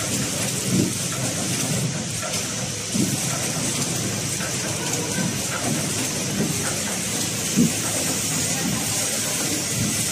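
Horizontal pillow-type flow-wrap packaging machine running, wrapping surgical face masks in film: a steady mechanical whir and hiss with a few louder knocks.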